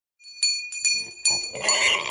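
A small bell struck three times, about 0.4 s apart, each strike ringing on, followed near the end by a short, noisy pig squeal.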